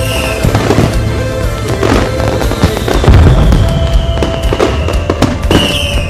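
Fireworks going off in quick succession: repeated bangs and crackling, with a long whistle falling slowly in pitch through the second half, over music.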